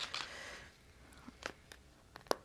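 Faint rustling of a paper sticker sheet being handled while a fingernail picks at a stubborn sticker that won't lift, followed by a couple of small ticks about halfway through.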